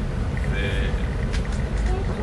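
A steady low rumble of room noise, with a brief spoken sound about half a second in.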